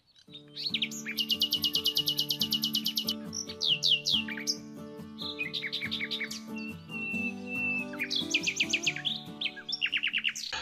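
Bird chirping and trilling over a steady, sustained music chord. It opens with a fast run of chirps, then comes a series of falling chirps and a held whistle, and a burst of rapid chirps near the end.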